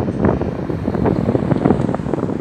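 Wind buffeting the camera's microphone: an irregular, crackling rumble.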